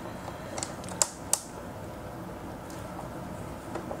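Fingers threading a small flathead screw through a mounting flange into a data logger's tapped insert: a few light clicks, the clearest about a second in, over low room noise.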